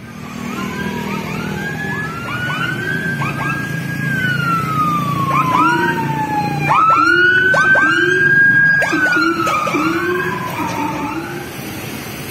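Police patrol escort sirens: a long wailing tone that climbs quickly, holds high, then slides slowly down, cycling several times, overlaid with many short rising whoops at different pitches from more than one siren. It is loudest about two-thirds of the way through, over a low rumble of passing traffic.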